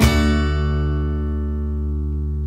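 Acoustic guitar striking a final strummed chord that rings out, slowly fading, as the song ends.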